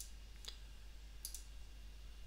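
A few faint computer mouse clicks over quiet room tone: one right at the start, a fainter one about half a second in, and a quick double click about a second and a quarter in.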